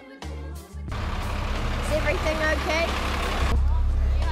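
After a quiet first second, the low, steady rumble of the overland truck's engine running, with voices calling over it.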